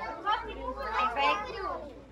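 A group of children's voices, many talking and calling out at once.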